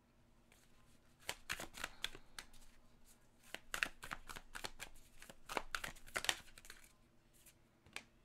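A deck of tarot cards being shuffled by hand: quick spells of cards slapping and riffling against one another, in short bursts between about one and six and a half seconds in.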